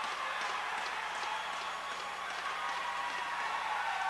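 Faint ice hockey arena crowd noise with scattered clapping just after a goal.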